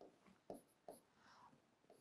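Faint marker strokes on a whiteboard, with two soft taps of the marker tip about half a second and about a second in.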